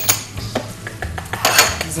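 Kitchen utensils clinking and scraping on a worktop: a knife against a cutting board and dishes being handled, with a louder clatter about a second and a half in.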